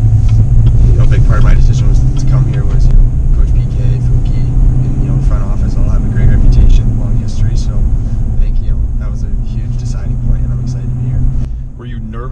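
Steady low cabin rumble of a Chevy Silverado Trail Boss pickup on the move, from its 5.3-litre V8 and road noise, under a man's voice.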